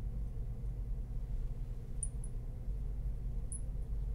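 Steady low room hum, with a few brief, faint high squeaks from a marker writing on a glass lightboard, two about two seconds in and one near the end.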